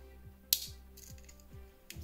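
A Swiss Army knife tool snapping on its backspring: one sharp metallic click about half a second in and a fainter click near the end, over soft background music.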